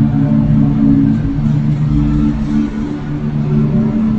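Slow instrumental worship music from keyboard and acoustic guitar: low chords held and changing every second or so, with no singing.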